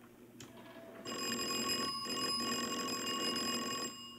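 Electric doorbell ringing steadily for about three seconds, starting about a second in and stopping just before the end.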